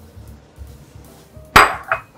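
A metal kitchen knife knocked twice against the cookware, two ringing clinks about a third of a second apart, the first the louder, as garlic is knocked off into the pot.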